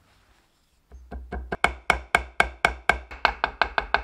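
Mallet repeatedly tapping a wooden peg into a hole through a wooden joint: a quick, even run of sharp knocks, about five or six a second, starting about a second in.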